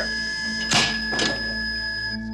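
Heart monitor's flatline alarm, a steady high tone, sounding while the heart has stopped. A sudden loud jolt from a defibrillator shock comes about three quarters of a second in, with a smaller thud half a second later.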